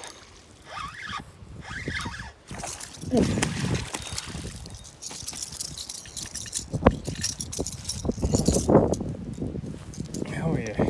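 Wind rumbling on the microphone and short wordless exclamations while a hooked largemouth bass is brought in and lands flopping on the grass bank. A single sharp knock stands out about two-thirds of the way through.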